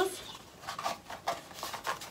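A small kraft cardboard jewellery box being handled and closed: a few short, soft scrapes and taps of cardboard.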